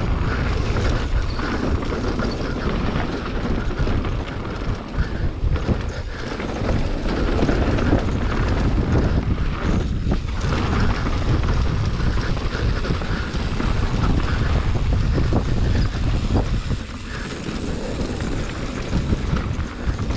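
Wind rushing over the helmet or chest camera's microphone on a fast mountain-bike descent, with tyres rolling over dirt and loose stones and the bike knocking and rattling over bumps.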